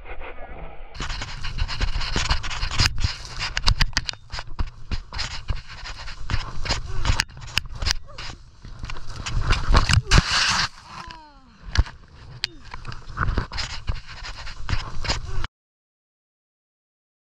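Skis scraping and chattering over snow, with wind buffeting the microphone and many sharp knocks. The sound cuts off suddenly near the end.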